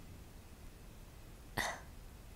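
A woman's single short, breathy intake of breath about a second and a half in, over faint room tone.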